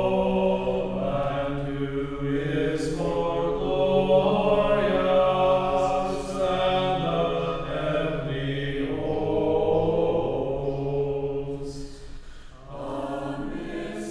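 A choir singing a slow church chant in long held chords that shift every second or two. The singing dips briefly near the end, then a new phrase begins.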